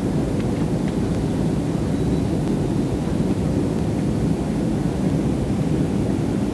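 Steady cabin noise of a jet airliner in flight, heard from a window seat inside the cabin: an even, unbroken low rumble of engines and airflow.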